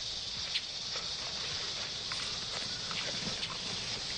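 Rainforest ambience: a steady high insect drone with scattered faint ticks and rustles.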